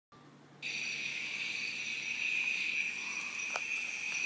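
A steady high-pitched tone with faint overtones starts abruptly about half a second in and holds without change: a sustained note that opens the music soundtrack.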